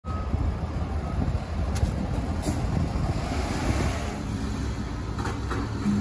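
A heavy vehicle's engine running, a steady low rumble.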